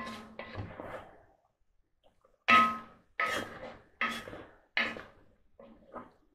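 Wooden spoon scraping and stirring inside a cast iron dutch oven of stew, then knocking against the pot four times about a second apart, each knock ringing briefly.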